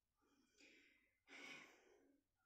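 A woman's two faint breathy sighs of effort as she strains to twist open a tight lip gloss tube; the second is the louder.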